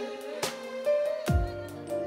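Live wedding band playing a slow song in a short gap between sung lines: held instrumental notes with a low drum thump a little past halfway and a few light hits.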